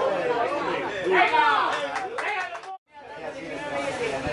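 Indistinct chatter of several people's voices, with no clear words, cut by a sudden brief gap of silence a little before three seconds in.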